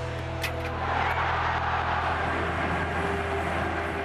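Stadium crowd roaring, swelling about a second in as a goal is celebrated, over a steady low music bed.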